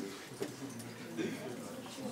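Faint, low murmur of voices in a room, with a small click about half a second in.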